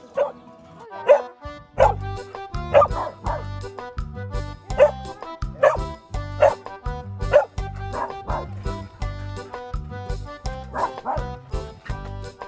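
A dog barking repeatedly, roughly once a second, over background music with a steady beat that comes in about a second and a half in.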